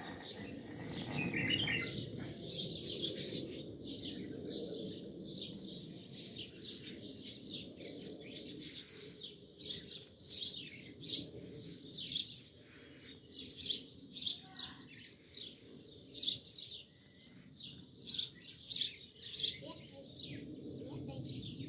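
Lorikeet giving short, high-pitched chirps over and over, several a second, with brief pauses between runs.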